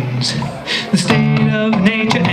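Ibanez AS-100 semi-hollow electric guitar played solo through an amp: plucked notes and chords ringing, broken by sharp slapped percussive hits on the strings and body, with a brief quieter moment about half a second in.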